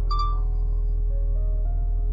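Calm background music, a slow melody of single held notes, over the steady low drone of a Doosan DX55 mini excavator's diesel engine running while the machine stands still.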